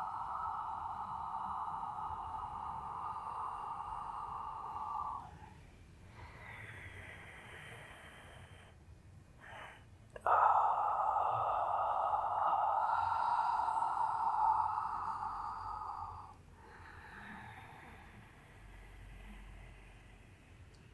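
A woman's audible breathing during a Pilates roll-down: two long, forceful exhales of about five and six seconds, each followed by a quieter, shorter inhale.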